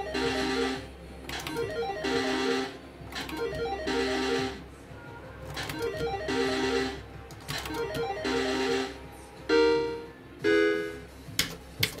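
Electronic slot machine game sounds: a short electronic jingle with a rattling spin noise, repeating about every two seconds as the reels are spun again and again. Near the end come two brief electronic tones.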